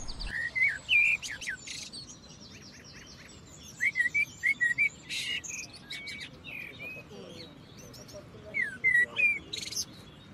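Songbirds chirping in short bursts of quick, high notes. There is a cluster about a second in, a longer run of chirps around the middle, and another near the end, over a faint outdoor background.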